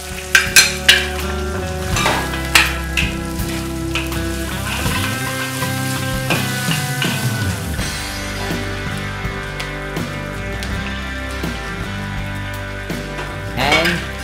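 A metal spatula scraping and clanking against a wok as shredded cabbage and carrots are stir-fried in oil, over a steady sizzle. A quick run of sharp clanks comes in the first second, with a few more scattered through and just before the end.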